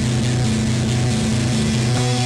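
Rock band playing an instrumental passage: distorted electric guitar and bass hold a low, buzzing riff that restarts in an even pulse about three times a second, with no vocals.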